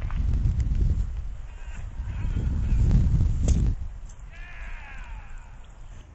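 Heavy low buffeting noise on the camera microphone for the first three and a half seconds, then a person's voice giving a drawn-out call that glides down in pitch for about a second.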